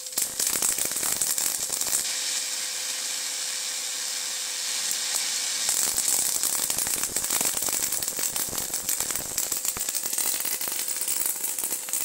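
High-voltage arc from a 555-timer-driven flyback transformer, drawn through the air between two wire electrodes: a continuous crackling hiss, with a faint steady whine underneath.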